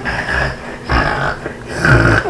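A child snoring loudly: three rough snorts, about a second apart.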